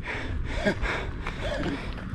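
A man's short breathy gasps, a few brief voiced breaths, over a low rumble of wind on the microphone.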